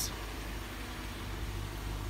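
A car engine idling steadily, a low even hum.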